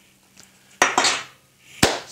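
A metal casting being set down on a hard surface: a short clattering clink about a second in, then one sharp knock near the end.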